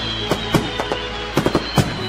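Music with sustained held tones, overlaid by fireworks going off: irregular sharp bangs, several in quick succession in the second half.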